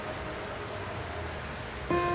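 Sparse background music: a held note dies away early, leaving a steady low rumble and hiss, and a new note comes in near the end.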